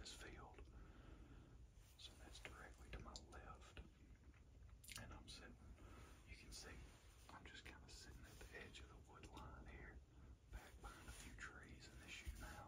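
Faint whispered speech, in short broken phrases.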